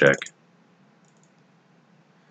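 Faint computer mouse clicks about a second in, against quiet room tone, just after the end of a spoken word.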